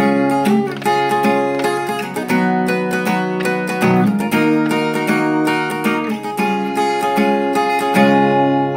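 Acoustic guitar with a capo on the fourth fret, strummed hard at full speed in a steady rhythm, cycling through the G, B minor and A chord shapes with a change roughly every two seconds.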